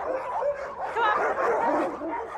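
Many dogs barking at once, short pitched calls overlapping one another in a dense, continuous chorus.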